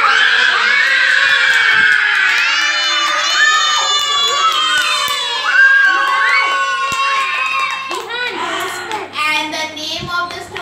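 A group of young children shouting and calling out together, many high voices overlapping in long drawn-out cries, thinning out about eight seconds in.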